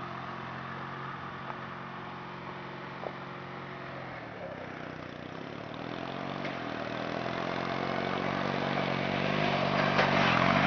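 Riding lawn mower engine running, its pitch shifting about halfway through, then growing steadily louder as the mower drives closer.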